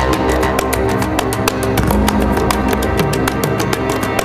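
A TV programme's theme music plays under the title card: sustained chords over a fast, steady beat.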